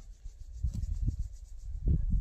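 Wind buffeting the microphone: an uneven low rumble that swells and drops from moment to moment, with a few soft knocks.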